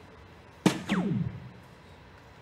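A soft-tip dart striking a DARTSLIVE electronic dartboard with a single sharp hit, followed at once by the machine's scoring sound effect, a tone falling steeply in pitch over about half a second. The effect marks a single 17.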